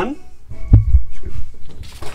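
Handling noise: a few dull low thumps with a sharp click about three-quarters of a second in, then the rustle of a sheet of paper being picked up near the end.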